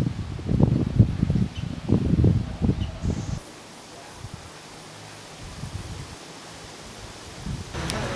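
Wind buffeting an outdoor microphone in irregular low gusts for the first few seconds. After a cut it gives way to a quiet, steady open-air background hiss, and louder noise returns near the end.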